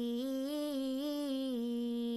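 A young woman's voice holding one long vocal warm-up note that wavers up and down in small pitch steps.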